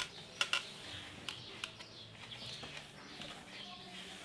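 A few short, sharp clicks and light knocks of a screw being fitted by hand into a wooden base, clustered in the first second and a half, then only faint background.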